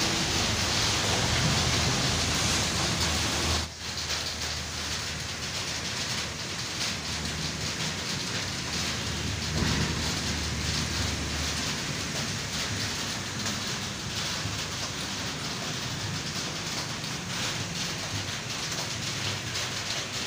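Heavy rain falling steadily, heard from inside an open-fronted shop. The sound drops out for a moment about four seconds in, then carries on a little quieter.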